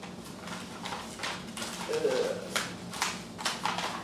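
Sheets of paper being rolled and taped into cylinders: irregular paper crinkles and light taps.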